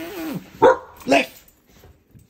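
Young Belgian Malinois giving a short falling whine, then two sharp barks about half a second apart.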